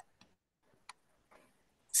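Near silence broken by four short, faint clicks.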